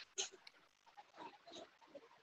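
Near silence on the call's audio line, broken by a faint click just after the start and a few faint, brief scraps of sound after about a second.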